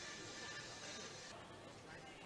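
Faint indoor arena ambience: distant voices and faint background music.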